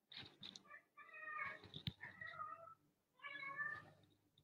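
A cat meowing: a short call, then two long, wavering meows, with a sharp click between them.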